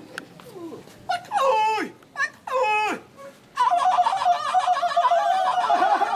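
Two long cries that slide steeply down in pitch. Then, about three and a half seconds in, a group of women breaks into a traditional Naga folk song, singing together on long, wavering held notes.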